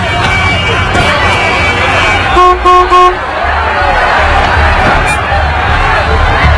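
Car horn honking three short toots about two and a half seconds in, over busy street traffic and shouting voices.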